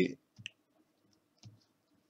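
Two faint, short clicks, one about half a second in and another near one and a half seconds, with near quiet between them.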